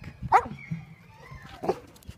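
A Belgian Malinois gives one short, sharp bark about a third of a second in, followed by a faint high whine and a second, quieter yelp near the end.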